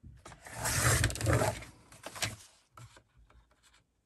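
Paper trimmer's sliding blade drawn through thick collaged card stock, cutting it in half: one scraping sweep lasting just over a second, followed by a click.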